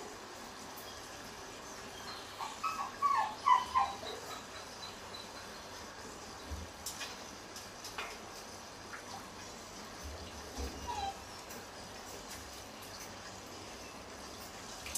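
Macaque giving a quick run of short, high-pitched squeaky calls a couple of seconds in, then a single call again about eleven seconds in. The owner takes these calls for anger at being watched while bathing.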